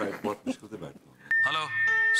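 Voices in the first second. Then, a little over a second in, a single steady high-pitched tone comes in suddenly and holds, with a voice over it.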